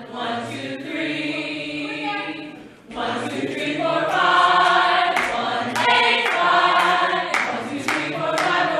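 A cast of singers doing an unaccompanied group vocal warm-up, many voices singing sustained notes together. The singing breaks off briefly just before three seconds in, then resumes louder.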